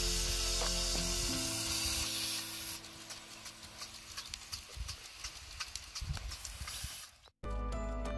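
Large sprinkler head on a tall pole spraying water: a loud hiss for the first few seconds, then a quieter spray with scattered sharp clicks. Background music under it, which takes over after a brief cut-out near the end.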